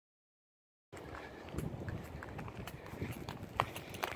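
Silence for about the first second, then outdoor ambience with irregular footsteps and small clicks on dry grass and leaves, one sharper click near the end.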